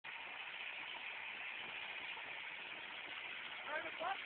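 John Deere 4720 compact tractor's diesel engine running steadily while it holds a stump up in its loader bucket, heard faintly as an even, hissy drone with no clear rhythm. A faint voice comes in near the end.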